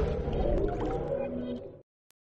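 Closing tail of a TV channel's intro jingle: sustained synthesizer tones that fade out and stop shortly before the end.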